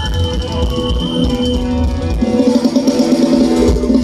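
Live Thai ramwong band music: drum kit keeping a steady beat under bass and sustained melody lines, growing fuller about halfway through.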